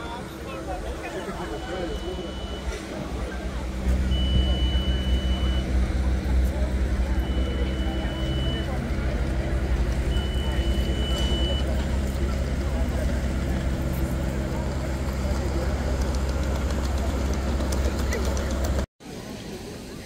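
Crowd of people talking indistinctly in an open plaza, over a steady low rumble and hum. Four long, high beeps sound about three seconds apart in the first half. The sound cuts off abruptly near the end.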